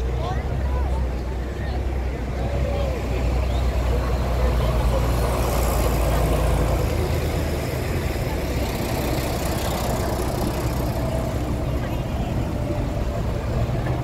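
Street traffic: idling vehicle engines in slow, queued traffic make a deep, steady drone that drops away a little past halfway through, under a constant wash of street noise and passers-by's voices.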